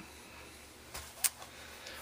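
Faint handling noise, with a short, light click a little over a second in.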